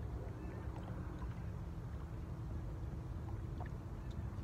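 Steady low rumble of wind buffeting a phone microphone at a lakeshore, with a few faint, short high ticks.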